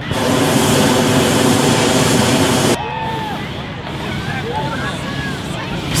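Hot air balloon propane burner firing in one long blast that cuts off abruptly a little under three seconds in. Crowd chatter follows.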